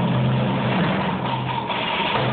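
Percussion ensemble playing sustained rolls: a steady low-pitched roll from the timpani under a dense rattle of drums. The low roll thins out about midway through.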